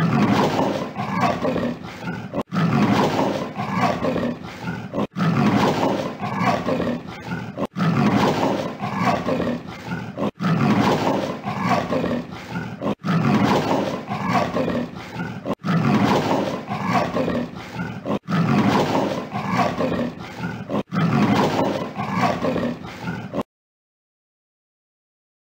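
Leopard call, a short recording looped about nine times. Each repeat lasts about two and a half seconds with a brief gap between, and it cuts off suddenly shortly before the end.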